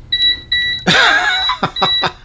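Kaiweets HT208D clamp meter's non-contact voltage beeper sounding in short repeated beeps, set off by the user's own body rather than a live wire. A man laughs about a second in while the beeping goes on.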